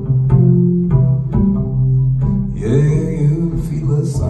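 Upright double bass played pizzicato, a line of plucked low notes, each ringing on until the next. A wavering higher pitched line joins near the end.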